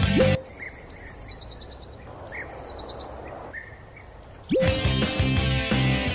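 Rock music with electric guitar stops about half a second in. For about four seconds, birds chirp in short descending trills over a soft hiss, then the rock music comes back in with a rising guitar slide near the end.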